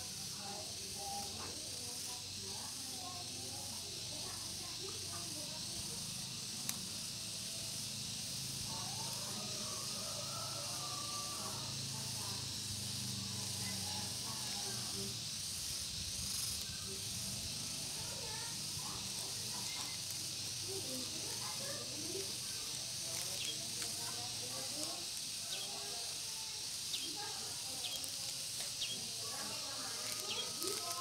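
Outdoor background: a steady high hiss with a low hum through the first half, faint distant voices, and a few light ticks near the end.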